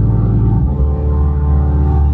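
Nord C2 combo organ holding a sustained chord in a solo keyboard intro; a little under a second in, the low bass note steps down to a lower pitch while the upper notes ring on.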